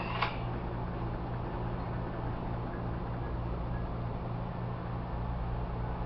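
Steady low hum and even rushing noise of a running fan, with one short click just after the start.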